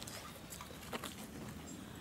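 Faint metallic clicks from a thurible and its chains as incense is spooned into it, with one clearer click about a second in, over a low background hum.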